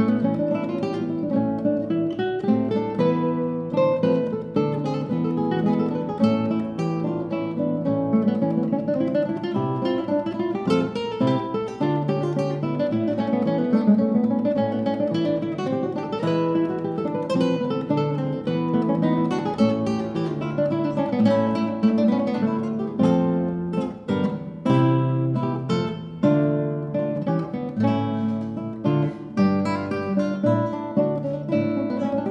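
Two classical guitars playing a duet: a continuous stream of plucked notes and chords, dipping briefly about three-quarters of the way through.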